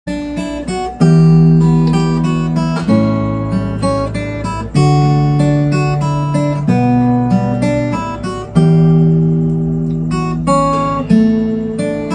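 Acoustic guitar playing a song's intro alone: a chord struck about every two seconds and left ringing, with lighter picked notes between.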